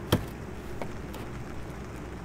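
A wooden-stocked air rifle being handled and set down in its box: one sharp knock just after the start, then two faint ticks over a low steady hiss.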